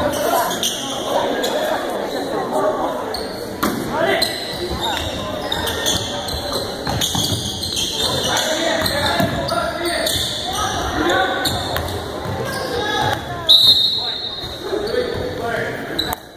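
Indoor basketball game: indistinct voices of players and spectators talking and calling out, with a basketball bouncing on the hardwood court in sharp knocks, all echoing in a large gym.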